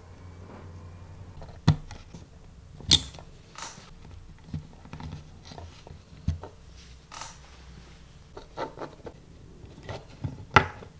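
Small tools and wires handled on a workbench as wires are soldered and screwed into a regulator board's screw terminal: scattered sharp clicks and taps, the loudest about two and three seconds in, over a low steady hum.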